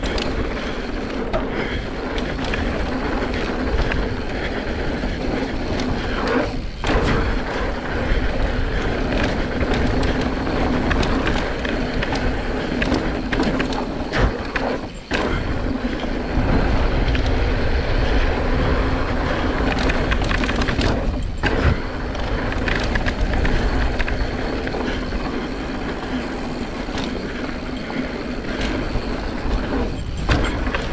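Mountain bike rolling over a dirt trail: tyre noise on loose dirt with a constant clatter of chain and frame rattle. It eases briefly three times.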